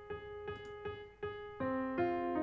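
Piano rehearsal track playing back: a motif of one note repeated about every 0.4 s, with lower notes joining and the music getting louder about a second and a half in.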